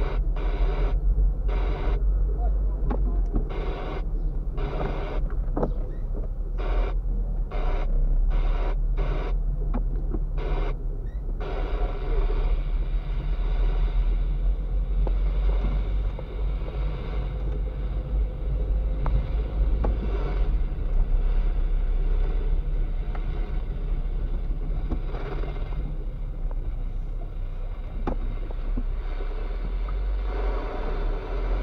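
Car in motion heard from inside the cabin: a steady low engine and road rumble.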